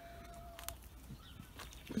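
Quiet spell beside a run of domestic hens: a short steady whistle-like note near the start and a few soft clicks, with the hens only faint.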